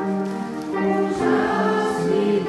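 Congregation singing a hymn together in unison-like chorus, voices holding long sustained notes.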